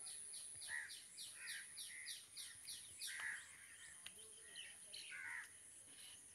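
Faint background birdsong: a quick run of high, falling chirps, about four a second, that thins out about three seconds in, with longer calls every second or so.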